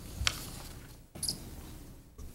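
A quiet pause in a meeting room with faint room noise. A short knock comes just after the start and a brief high squeak a little over a second in, small handling noises of people at the table.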